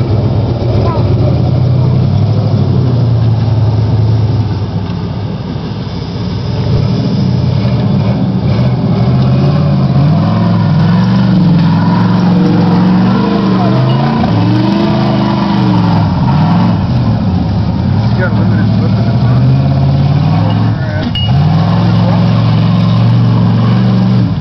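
Big-block V8 of a lifted Ford pickup revving hard through a mud pit. The engine pitch dips briefly a few seconds in, climbs and falls several times in the middle as the tires spin and grab, then is held high near the end.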